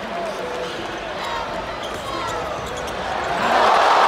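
Basketball being dribbled and sneakers squeaking on a hardwood court over steady arena crowd noise; a little over three seconds in, the crowd noise swells louder.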